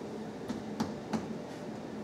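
Three light taps a third of a second apart, fingers striking against a projection screen, mimicking the finger strike of chest percussion, over quiet room tone.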